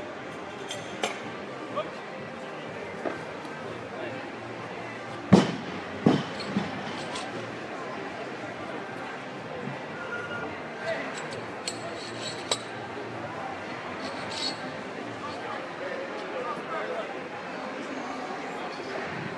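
Iron weight plates being handled and loaded onto an Olympic barbell: scattered metallic clinks and knocks, the loudest a sharp clank about five seconds in with two more just after, and a run of light clinks later.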